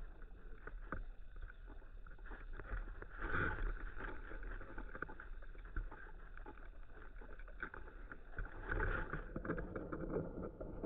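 Underwater pond sound picked up by a submerged camera: a low rumble of water with irregular faint clicks and ticks, swelling louder about three seconds in and again near the end.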